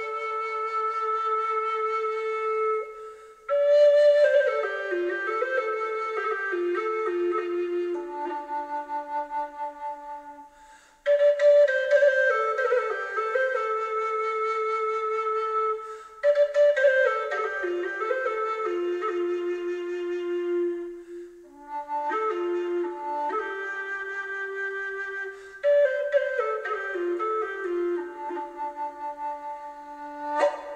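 A cedar Native American flute in the key of D is played solo. It is a deep, low bass flute with six holes, tuned to the Plains minor pentatonic scale. Phrases open on a high held note and fall step by step to a low held note, with short breaks for breath between them.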